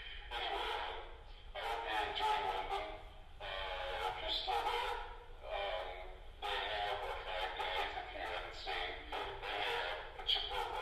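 A recorded voice message from a man, played back over loudspeakers, talking in phrases with short pauses and sounding thin, like a phone recording; it serves as the tape part of a piano piece.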